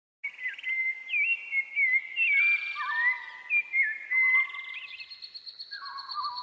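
Bird calls on a soundtrack: several overlapping chirps and whistles gliding up and down in pitch, starting suddenly after a brief silence.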